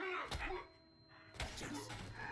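Sound effects from a close-quarters fight scene: two short, loud bursts of hits and swishes, one at the start and one about a second and a half in.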